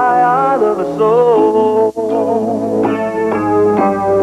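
A man singing a slow love ballad to his own accompaniment on a Yamaha DX7 synthesizer keyboard, sustained electric-piano chords under held sung notes with vibrato. The music breaks off for a moment about two seconds in, then carries on.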